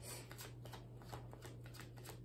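A tarot deck being shuffled by hand: faint, irregular card clicks and flicks, several a second, over a steady low hum.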